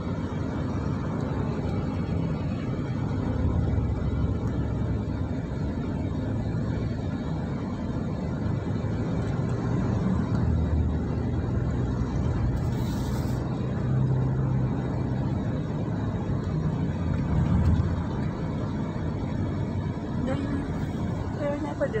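Steady road and engine noise heard from inside a moving car's cabin: a continuous low rumble of tyres and engine while driving.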